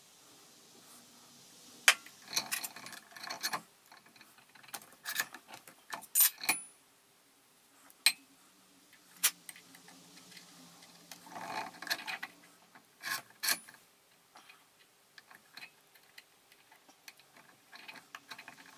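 Small steel parts clicking and clinking as a little bearing assembly and a bolt are handled and fitted by hand, with scattered sharp taps, a few of them ringing briefly.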